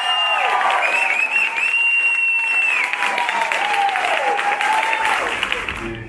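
A room of guests applauding, with cheering voices and a long high whooping shout over the clapping. The applause dies down near the end.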